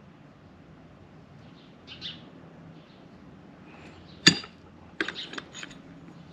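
Mostly quiet outdoor background with a faint short chirp about two seconds in. A single sharp click comes a little past four seconds, then a quick run of light clicks and clinks near the end, from metal tools and parts being handled on the work table.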